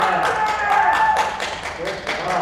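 Rapid, even clapping at about six claps a second, with voices cheering in long whoops over it.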